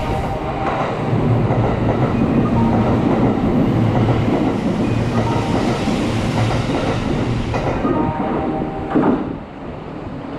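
Kintetsu 80000 series Hinotori limited express passing through a station at speed without stopping: a loud, sustained rush of wheels on rail and running gear that drops away about nine seconds in as the last car goes by.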